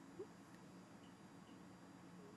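Near silence: room tone with a faint hum, and one faint short sound about a quarter second in.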